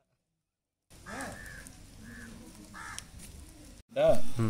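A bird calling outdoors, three or four short calls, starting about a second in after a near-silent opening.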